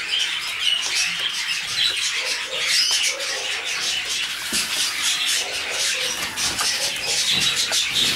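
Many cage birds, canaries and parrots, chirping and chattering at once in a steady, busy chorus.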